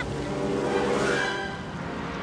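Orchestral film score playing sustained chords over the steady rush of churning water.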